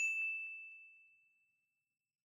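A single high ding sound effect: one clear tone with brief bright overtones, struck once and fading away over about a second.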